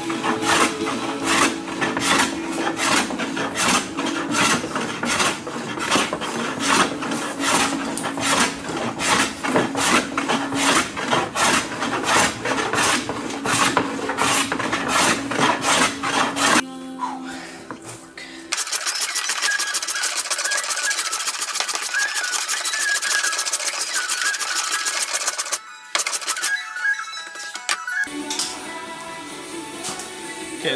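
Rapid, rhythmic strokes of a Stanley No. 4 hand plane shaving across a hardwood board, flattening its face, over background music. The strokes stop a little past halfway.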